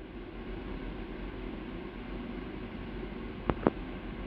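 Steady background hiss with a low hum, with two short clicks close together about three and a half seconds in.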